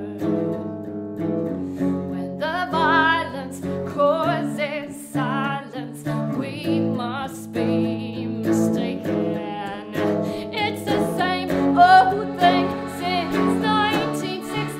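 Live band music: a woman singing with a wavering vibrato over electric guitar and accordion.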